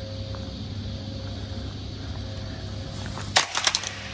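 Steady low hum of a large indoor hall with a faint higher tone running through it. About three and a half seconds in there is a brief clatter of several sharp knocks and clicks.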